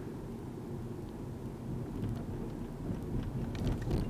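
Steady low rumble of road and engine noise inside a moving car's cabin, with a few faint clicks near the end.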